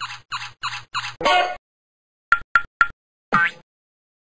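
Cartoon sound effects for a wheeled toy dog: a run of evenly spaced squeaks, about three a second, then a longer squawk, three quick sharp clicks and a short falling boing.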